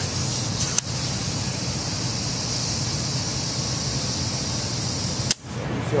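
Compressed air hissing steadily through an air chuck into a BMX front tyre's valve, cutting off sharply about five seconds in, with a single click shortly after the start. The tyre is being filled hard, to around 60 psi.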